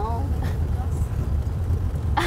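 Steady low rumble of a vehicle's engine and road noise, heard from inside the cabin while driving.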